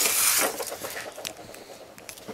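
A hand brushing across the tabletop right beside the microphone: a brief loud rustle in the first half second, then faint small handling clicks.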